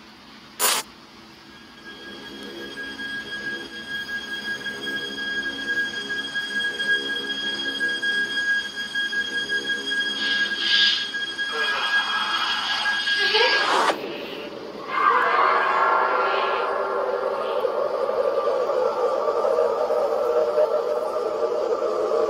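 Suspense drone from a horror video's soundtrack. It swells over the first few seconds under two steady high tones, rises in a sweep about fourteen seconds in, and then goes on as a denser, louder sustained sound. A sharp click comes just under a second in.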